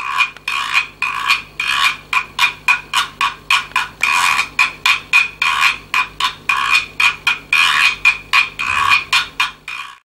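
Guiro scraped with a stick in a fast, steady run of rasping strokes, about three a second, some short and some drawn out, giving a croaking sound like a frog.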